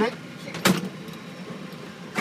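A single sharp clunk about two-thirds of a second in as the airliner cockpit's sliding side window is unlatched and opened, over a steady low hum.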